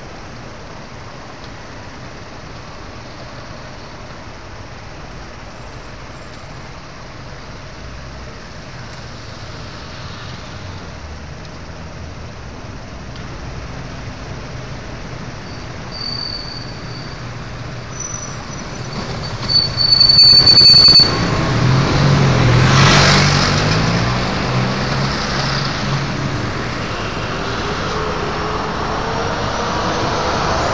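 Steady city street traffic. About two-thirds of the way in, a heavy vehicle's brakes give a short high squeal, the loudest sound here, and then its engine runs loud as it passes and fades.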